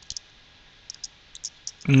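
Computer keyboard keystrokes: a handful of light, sharp key clicks in an irregular run as a command is typed.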